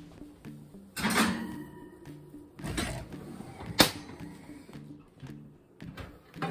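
A casserole dish set onto a wire oven rack and the oven shut: a few clatters and knocks, the sharpest nearly four seconds in. Faint music plays underneath.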